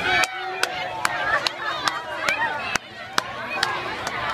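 Crowd voices with a steady beat of sharp strikes, about two and a half a second.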